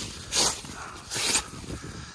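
Gloved hand brushing wet, heavy snow off the fabric wall of a hot tent: two short swishing sweeps about a second apart.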